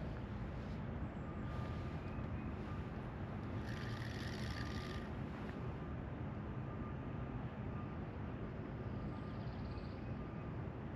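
Distant road traffic: a steady low hum of vehicles, with a brief higher hiss about four seconds in.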